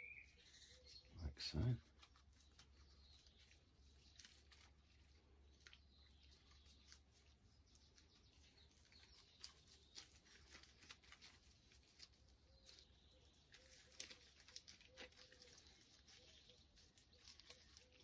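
Near silence with a faint steady low hum and scattered faint light clicks and ticks, from a grease-covered hub being handled by gloved hands.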